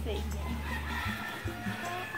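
Background music with a steady low bass line and long held higher notes over it.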